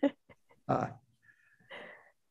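Soft laughter in several short, broken bursts, with a hesitant "uh".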